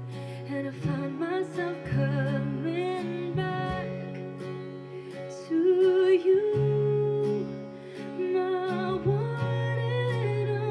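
A woman singing a ballad to acoustic guitar accompaniment. Her long held notes waver with vibrato.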